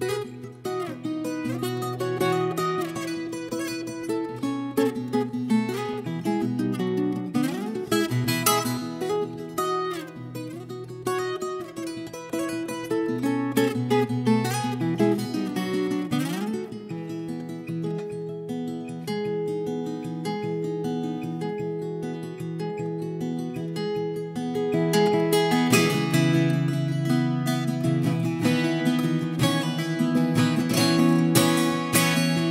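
Viola caipira, the ten-string Brazilian folk guitar, playing a plucked melody and chords, louder from about 25 seconds in.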